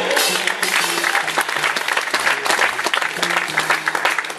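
Audience clapping over a live jazz band as a solo ends, with upright bass notes continuing underneath.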